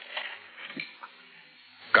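A man's faint, halting vocal sounds, short and broken by pauses.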